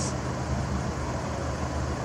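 A car engine idling: a steady low rumble with no change in level.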